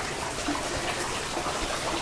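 Hot-spring water running steadily into an outdoor stone bath, a constant even rush of water.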